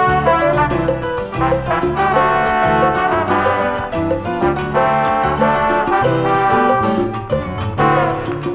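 Salsa band music: an instrumental passage with a brass section over a steady beat and bass, with no singing.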